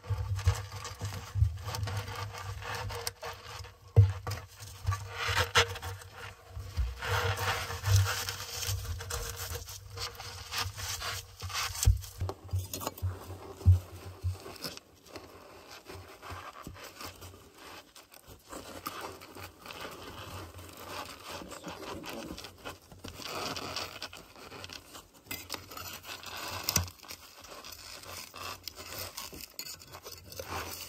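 Fired clay bricks scraping, rubbing and knocking against one another as they are slid and set into place in the masonry of a brick stove, with many short clicks throughout.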